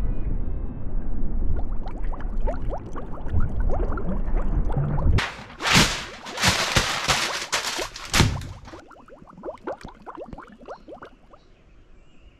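Choppy lake water sloshing and splashing, with wind rumbling on the microphone. About five seconds in, a few seconds of loud rushing noise takes over, then it drops to faint clicks and rustling.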